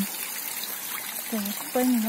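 Steady trickle of water running into a garden pond.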